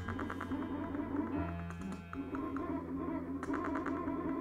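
Experimental electronic noise music from vintage synthesizers: a steady low bass drone under a dense, jittery mid-range texture, with bright clicking at the start and again near the end.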